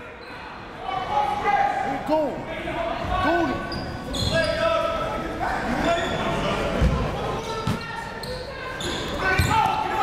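A basketball dribbled on a hardwood gym floor, several dull thuds spaced a second or so apart, with sneakers squeaking and players' voices calling out, echoing in a large gym.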